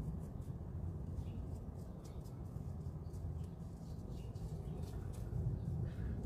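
Low, steady drone of a distant small airplane from a nearby flight school, with a few faint light ticks over it.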